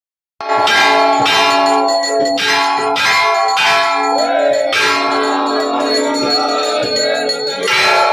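Metal temple bells struck over and over, about every half-second at first, each strike ringing on in steady overlapping tones. The strikes thin out after about four seconds, and the ring hangs on until one more strike near the end.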